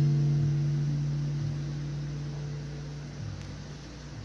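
A low acoustic guitar chord ringing out after the last strum, one low note lingering and fading slowly away.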